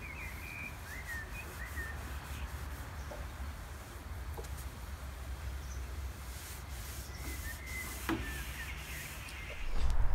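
Quiet outdoor ambience: small birds chirping now and then, a few short calls near the start and again about seven to eight seconds in, over a low steady rumble.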